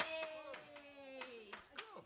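Several quick hand claps, a few a second, under a long drawn-out "ooh" from a woman's voice that slowly falls in pitch and fades about a second and a half in.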